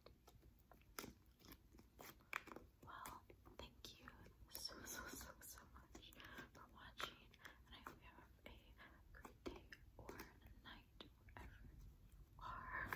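Very quiet whispering, with scattered small clicks throughout.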